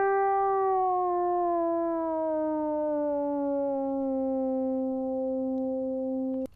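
Synthesizer tone bent down by a fifth with a MIDI keyboard's pitch wheel: it holds, glides steadily lower for about four seconds, then settles on the lower note. The glide is not perfectly smooth, only as smooth as the little pitch wheel allows.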